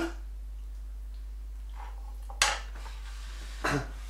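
A single sharp clatter of kitchenware, a utensil or dish striking, a little over halfway through, over a steady low hum; a short voice sound comes near the end.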